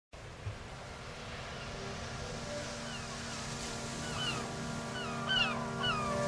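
Birds chirping in short falling notes over a soft, sustained music backing that slowly swells in; the chirps start a few seconds in and grow more frequent.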